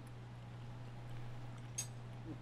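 A fork clinks once near the end, over quiet room tone with a steady low hum.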